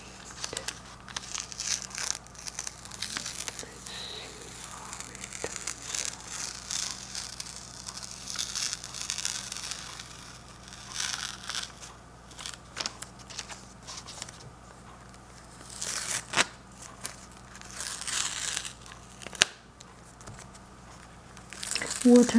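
Blue painter's tape being peeled off the edges of a watercolor painting: intermittent ripping pulls, with paper and newspaper crinkling and a few sharp clicks.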